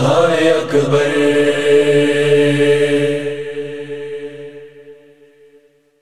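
Voices of a noha's closing refrain holding a final long chord that fades away to nothing over about five seconds.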